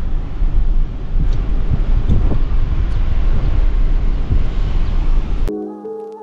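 Wind rushing over the microphone with road noise from a moving car, heavy and rumbling, as filmed through an open side window. About five and a half seconds in it cuts off suddenly, and soft piano music takes over.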